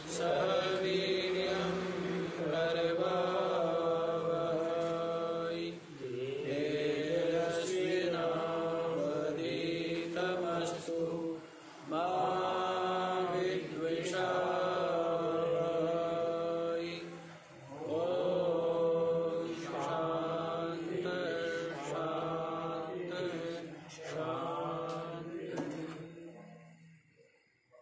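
A man's solo voice chanting a Sanskrit verse in a slow, melodic recitation, in long held phrases of about five or six seconds with short pauses for breath between them.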